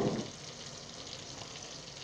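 Sliced onions frying in oil in a pot, a steady soft sizzle.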